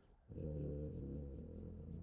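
A man's drawn-out hesitation hum, a low steady 'mmm' held for about a second and a half while he searches for a word mid-sentence.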